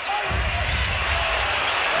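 Steady crowd noise in a basketball arena during live play, with the ball being dribbled on the hardwood court.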